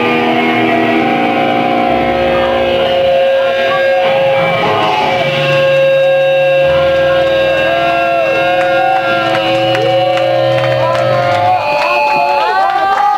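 Live rock band playing loudly: electric guitars and bass holding long, sustained notes, with guitar notes bending up and down over and over in the second half.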